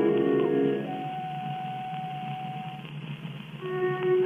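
Orchestral introduction on a 1908 acoustic-era recording. A full sustained chord dies away about a second in, leaving one soft held note, and further held woodwind and string notes come in near the end. The sound is thin and narrow, with no deep bass and no top, as typical of an early acoustic horn recording.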